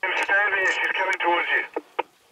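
A voice coming over a two-way radio, tinny and cut off at top and bottom, starting abruptly and breaking off near the end with a short click.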